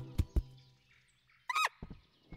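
A nut drops onto the forest floor and bounces with two soft thuds in quick succession. About one and a half seconds later the cartoon chinchilla gives one short, squeaky, bending call.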